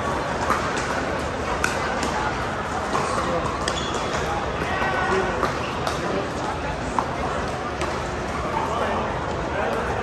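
Pickleball paddles hitting a hard plastic ball during a rally: a series of sharp, irregularly spaced pops over steady background chatter from the hall.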